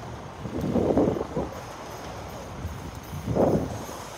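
Wind buffeting the on-board microphone in two gusts, about a second in and again near the end, as the Slingshot reverse-bungee capsule swings and bounces on its cords.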